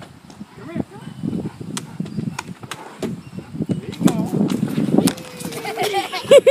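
A dog snorting and huffing in repeated short bursts, with sharp clicks scattered among them.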